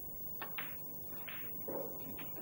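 Snooker cue tip striking the cue ball, then the cue ball clicking into the black, two sharp clicks about a fifth of a second apart; about a second later comes a duller sound as the black is potted.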